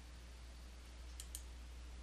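Two faint computer mouse-button clicks in quick succession a little over a second in, over a low steady hum.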